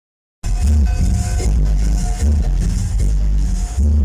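Electronic dance music with a heavy, repeating bass line played loud through a mobile disco's stage sound system during a sound test; it starts about half a second in.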